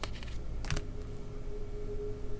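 Two light clicks about three quarters of a second apart as tarot cards are handled and drawn, with a faint steady hum behind them.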